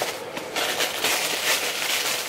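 Tissue paper crinkling and rustling as it is pulled open inside a gift box, a dense run of irregular crackles.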